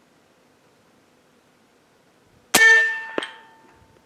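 A .357 American Air Arms Slayer PCP air rifle fires once about two and a half seconds in: a sharp report with a metallic ring that fades over about a second. About two-thirds of a second later comes a short, sharp knock, the slug striking the squirrel at about 100 yards.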